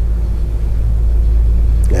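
Steady deep rumble in the studio sound, unchanged throughout, during a pause in a man's talk; his voice comes back just at the end.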